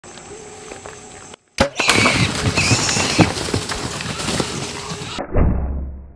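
Wild hogs feeding at a night feeder: a sharp click about a second and a half in, then loud dense crackling and crunching with scuffling and a brief high squeal-like note, thinning out after about five seconds.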